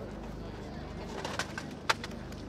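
Quiet outdoor crowd ambience with faint murmuring from onlookers, and a single sharp click near the end.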